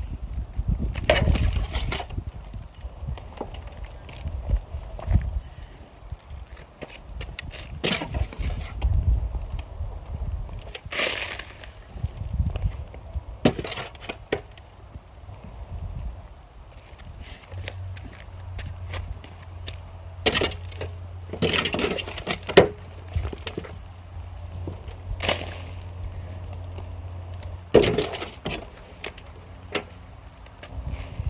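Shovel scooping and spreading a soil mix over a seed bed, with scrapes and dull knocks at irregular intervals and footsteps.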